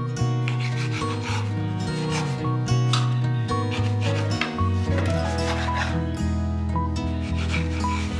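A knife sawing back and forth through the crust of a freshly baked Turkish Ramazan pide on a wooden cutting board, in repeated rasping strokes, over background music.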